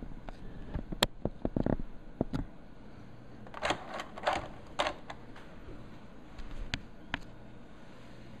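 Handling noise around a phone and handheld camera: scattered sharp clicks and a few short rustles, with no steady tone.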